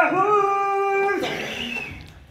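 A man's long, drawn-out vocal note into a handheld microphone, held steady and then trailing off about a second in.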